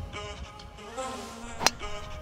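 Background music with steady tones, and a single sharp crack about one and a half seconds in: a golf driver striking the ball off the tee.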